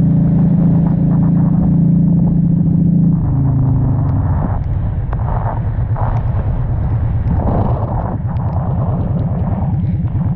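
Honda Shadow 750 Aero V-twin motorcycle engine running at a steady speed. About three seconds in the engine note drops as the throttle is closed, and it turns into a lower, pulsing rumble as the bike slows on a wet road, with bursts of hiss over it.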